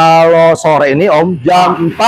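A man's voice talking in a drawn-out, sing-song way, the first word held on one pitch for about half a second.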